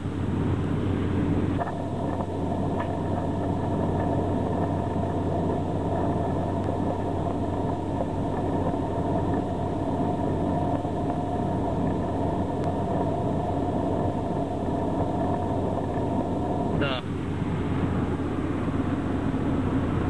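Steady road and engine noise inside the cabin of a 1998 Honda Civic hatchback at highway speed. About a second and a half in, a steady whine of several tones joins it and holds.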